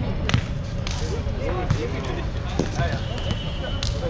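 A basketball bouncing a few times on an outdoor hard court, with short sneaker squeaks near the end.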